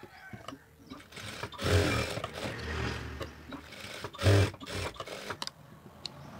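Industrial sewing machine running a stitching run of about two seconds, then a second short burst, with a few sharp clicks near the end.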